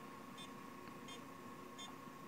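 Several faint, very short electronic beeps, a fraction of a second apart, from a repaired Hillstate electronic wall control switch panel as it powers up and boots, over a faint steady whine.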